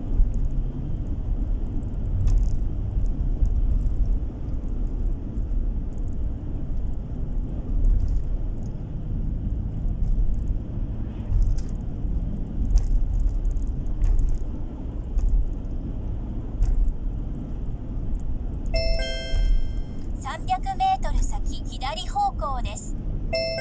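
Steady low rumble of a car's road and engine noise heard inside the cabin while driving on a paved road. Near the end an electronic chime sounds, followed by a couple of seconds of warbling electronic tones.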